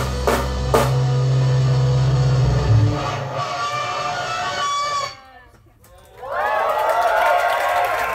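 A rock band's final chord, electric guitars and bass held under cymbal crashes, ringing out and stopping about five seconds in. A second later the audience starts cheering and applauding.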